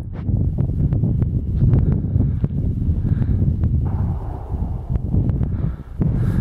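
Wind buffeting the microphone, with several faint, sharp cracks of distant gunfire scattered through it.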